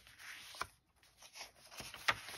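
Paper pages of a handmade junk journal being turned by hand: faint paper rustling with two light ticks.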